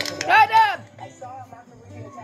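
Sound of a video playing on a laptop: two loud rising-and-falling voice-like cries about half a second in, then quieter voices, over a low steady hum and music.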